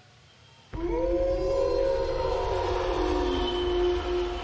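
Entrance music hitting suddenly under a second in: a long held pitched tone with several overtones over a deep rumble, one line sliding lower near the end.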